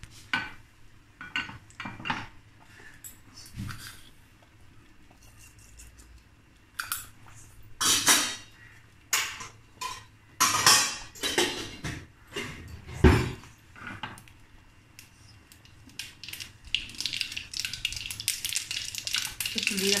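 Metal utensils clinking and knocking against a small pan and a steel bowl during tempering of mustard seeds in hot ghee, with a few louder knocks in the middle. Near the end a dense crackling sizzle builds as the mustard seeds splutter in the ghee.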